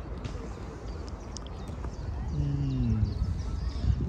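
Outdoor ambience with a steady low rumble. A little past halfway, a low voice gives a short hum of about a second that falls in pitch.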